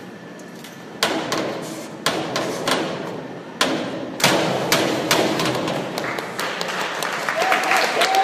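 Springboard dive: sharp thuds from the board as the diver works it and takes off, then the splash of his entry into the pool about four seconds in, followed by water washing and splashing. Voices rise near the end.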